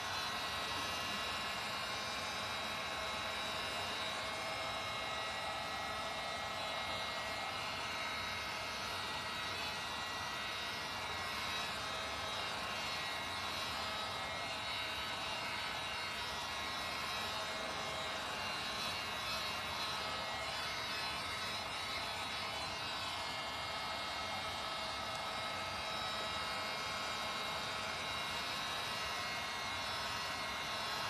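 Handheld electric heat gun running steadily, its fan blowing with a constant motor whine and no change in pitch, drying freshly applied paint or texture on a craft piece.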